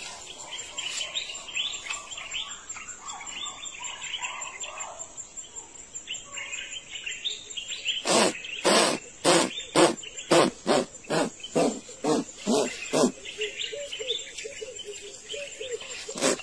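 Birds chirp faintly over an insect's steady high trill. About halfway through, a chimpanzee starts a rhythmic run of loud breathy pants, about two to three a second and slightly quickening. Near the end they turn into voiced hoots, like the build-up of a pant-hoot.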